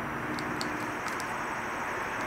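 Steady low background noise, an even hiss with a faint hum, and no distinct event.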